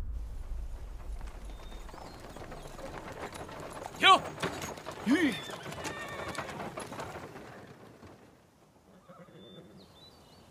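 A horse neighs loudly about four seconds in, followed about a second later by a shorter, lower call, over the clip-clop of hooves on a dirt track.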